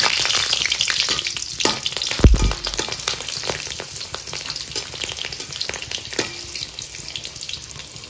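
Green chillies, dried red chillies and garlic sizzling in hot oil in a metal kadai, loudest at the start and slowly dying down. A metal spatula scrapes and clicks against the pan throughout, with one dull thump a little over two seconds in.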